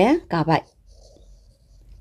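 A woman's voice speaks briefly, then a faint stylus scratches across a tablet's glass screen while writing.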